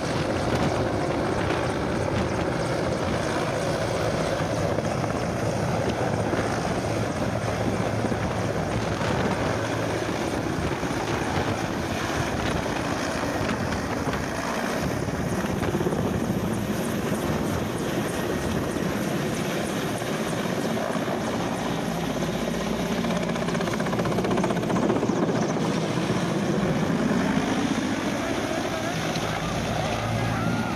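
Large military transport helicopter flying low: steady rotor and turbine engine noise, with wind buffeting the microphone. The pitch bends near the end.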